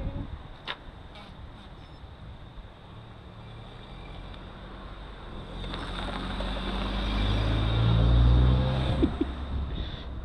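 A car driving up a narrow lane and passing close by: its engine hum and tyre noise build from about halfway through, peak about two seconds before the end, then fall away.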